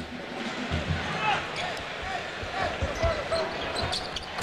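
A basketball being dribbled on a hardwood court: a run of short, low thuds over steady arena crowd noise.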